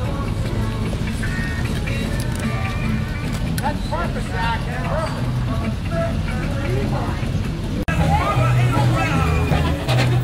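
Parade street sound: people chattering and music playing over running vehicles. There is a brief dropout about eight seconds in, after which the music is louder.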